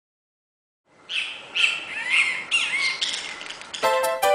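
Birds chirping and calling, a series of short calls with quick pitch glides over a faint hiss, starting about a second in. Music comes in just at the end.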